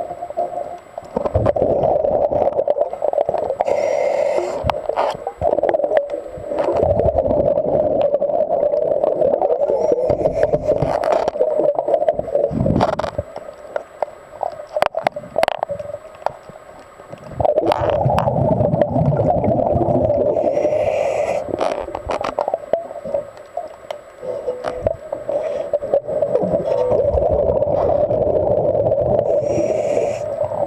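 A scuba diver breathing through a regulator, heard underwater: a short hiss of inhaling four times, each followed by a long stream of exhaled bubbles, with scattered sharp clicks.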